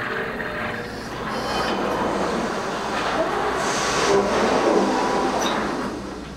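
Steady mechanical noise of industrial machinery running, an even rumble and hiss with a few faint clanks.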